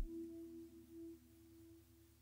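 Electronic techno music cutting off at the very start, leaving near silence with a faint low tone pulsing softly on and off over a steady low hum, the fading tail of the synth.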